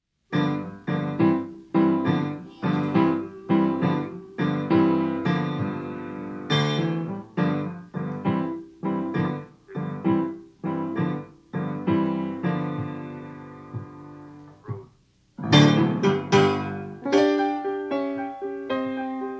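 Blues piano playing a song's intro alone: a steady run of struck chords, about two a second, each ringing and fading. It breaks off briefly near the end and comes back louder.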